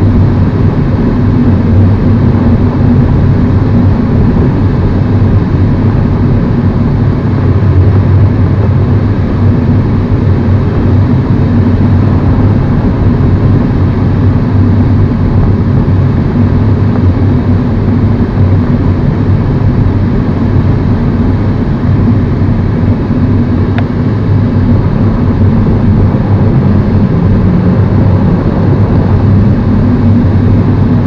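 Steady drone of a tow plane's engine heard from inside a glider cockpit on aerotow, over a constant rush of air around the canopy.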